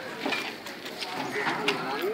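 Several people talking at once in a crowd, with a few small clicks.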